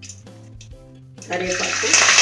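Curry leaves dropped into hot oil in an aluminium pan, sizzling. The sizzle starts about a second and a half in and quickly grows loud, over faint background music.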